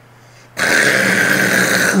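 A man's voice drawing out a single syllable, loud, strained and raspy, starting about half a second in and holding for about a second and a half.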